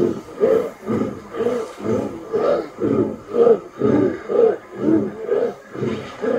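Many voices chanting together in unison, a regular rhythmic pulse about twice a second.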